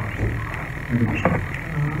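A man's voice making a few short, low hesitation sounds between phrases of speech, with no clear words.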